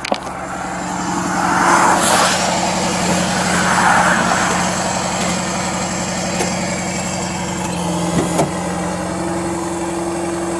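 Rollback tow truck's engine running steadily, powering the hydraulics as the winch and slide-deck control levers are worked. Two louder rushing swells come in the first half, and a few small clicks come near the end.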